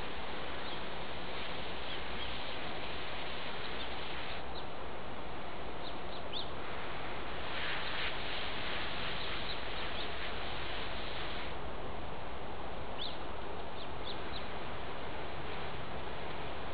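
Steady, even hiss of outdoor background noise, with a few faint, short high chirps scattered through it.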